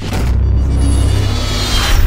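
Cinematic logo-reveal sting: a loud, deep, steady drone with a bright, sparkling whoosh over it.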